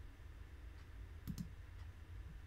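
Two quick clicks of a computer mouse about a second and a quarter in, over a low steady hum.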